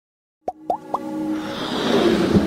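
Intro sound effects and music: after a brief silence, three quick pops that each glide upward in pitch, then a swell of electronic music building up.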